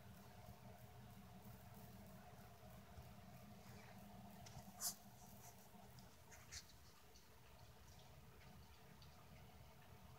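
Near silence: faint room tone with two light clicks, a sharper one about five seconds in and a softer one a second and a half later.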